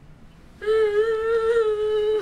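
A boy's voice held on one long, steady, slightly wavering note, starting about half a second in: a mock wail of crying.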